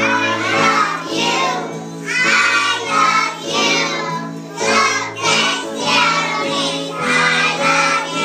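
A group of young children singing a song together in unison.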